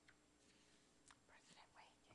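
Near silence: room tone with a few faint, breathy sounds about a second in.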